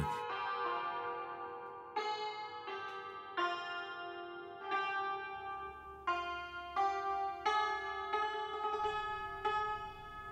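Iranian santur (hammered dulcimer) played slowly with its light mallets: a melody of single struck notes, each ringing on under the next, about a dozen strikes.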